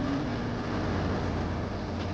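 Steady outdoor background noise: a low rumble with an even hiss over it.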